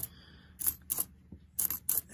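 Lincoln pennies clicking against one another as fingers push and sort them across a coin mat: several short, sharp clicks at irregular moments, with a cluster near the end.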